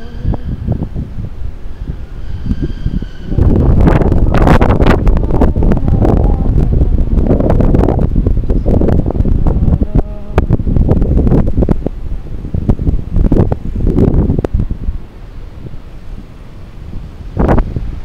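Wind buffeting the microphone of a camera on a moving bicycle. It is heavy from about three seconds in and eases about fifteen seconds in, with scattered clicks and knocks throughout and one sharp knock near the end.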